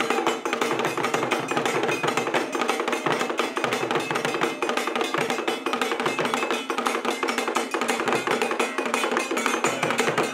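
Traditional Ghanaian drum ensemble, several large carved drums struck with curved sticks, playing a fast, dense rhythm that keeps going without a break.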